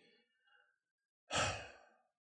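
A person sighs once, a short breathy exhale about a second and a half in, after a pause, just before reluctantly answering yes.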